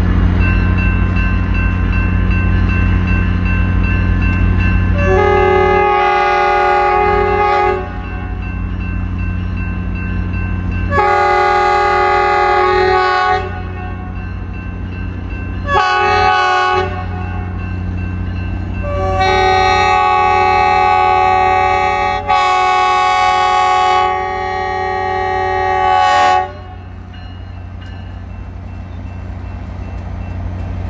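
Grand Canyon Railway diesel locomotive, an EMD F40PH, running as it pulls its train away, sounding its multi-chime air horn in the grade-crossing pattern: two long blasts, a short one, then a final long one that breaks briefly near its middle. The engine's low hum carries on under and after the horn.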